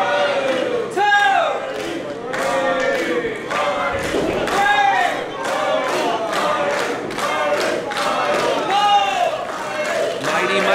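Small crowd of wrestling fans shouting and chanting together, with rhythmic clapping, as both wrestlers are down in the ring.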